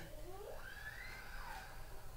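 A house cat meowing once: one faint, drawn-out call that rises in pitch, holds, then falls away over about a second.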